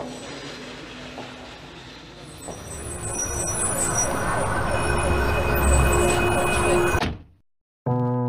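Street traffic noise that swells in loudness over several seconds, with a few steady tones held above it, then cuts off abruptly about seven seconds in.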